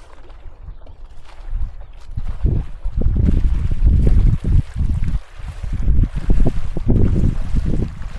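Wind buffeting the microphone over open water: a loud, gusty low rumble that builds about two seconds in and pulses unevenly.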